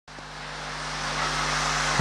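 A greyhound track's mechanical lure running along its rail toward the starting boxes: a rushing noise that grows steadily louder, over a low steady hum.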